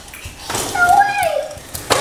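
A brief high-pitched voiced exclamation, followed by a single sharp knock just before the end.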